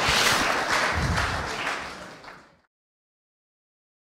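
Audience applauding, fading away over the first two and a half seconds.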